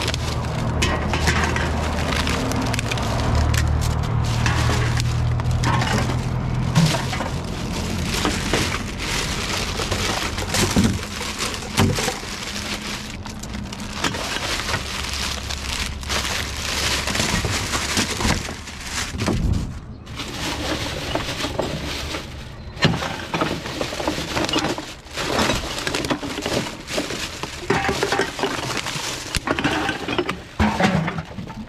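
Plastic bags rustling and crinkling while aluminium drink cans and glass bottles clink and knock together as they are handled and sorted, with many short sharp knocks throughout. A low hum sits under the first several seconds.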